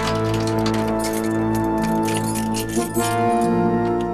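Tense background music with sustained tones, over which a bunch of keys jingles and clicks against a metal door-knob lock as a key is worked into it to lock the door.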